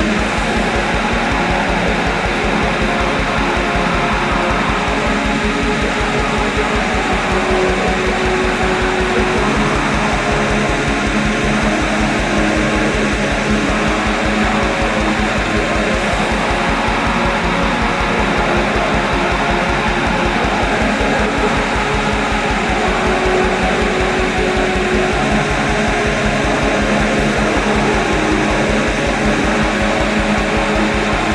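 Atmospheric black metal: a dense, loud wall of distorted guitars over fast, steady drumming that runs without a break.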